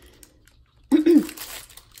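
Faint rustling of tissue paper and a plastic toy ball being handled, then, about a second in, a short vocal sound from a woman: a brief hum or throat-clear.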